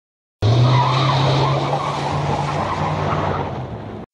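Tyre-squeal sound effect: car tyres screeching over a steady engine drone. It starts abruptly about half a second in and eases slightly towards the end.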